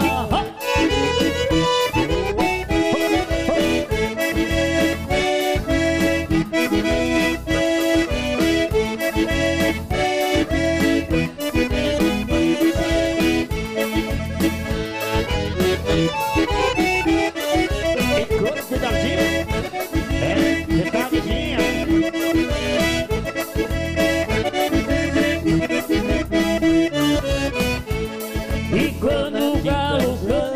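Piano accordion leading an instrumental passage of bandinha dance music, backed by keyboard and drums keeping a steady beat.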